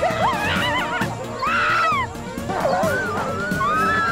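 Background music with many high, wavering cries and whoops from several voices over it, gliding up and down in pitch.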